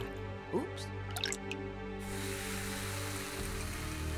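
Cartoon liquid sound effects over a background music score: a few quick drips and splats as green chemical liquid lands, then a steady fizzing hiss from about halfway through as the spilled puddles smoke.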